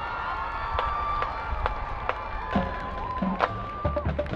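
A marching band's show beginning: held, sustained notes in several voices, with a few sharp percussion strikes scattered through.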